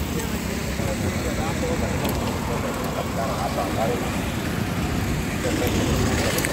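Busy street ambience: steady traffic noise with faint voices of passers-by.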